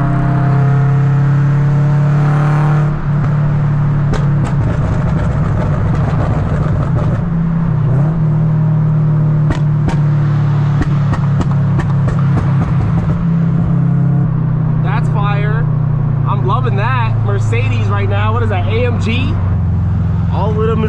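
Steady low exhaust drone of a 2013 Scion FR-S's flat-four engine at highway cruise, heard from inside the cabin, with scattered light ticks and knocks. A voice comes in over it in the last few seconds.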